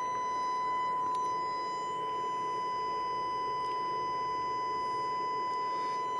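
Steady 1 kHz test tone from a valve (tube) amplifier in triode mode with negative feedback, driven into saturation at about 10% distortion. The tone carries a row of overtones up to the eighth.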